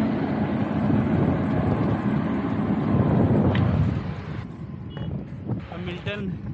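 Wind and road noise on a bike-mounted action camera as a road bike rides along a highway: a dense low rumble that drops off suddenly about four seconds in.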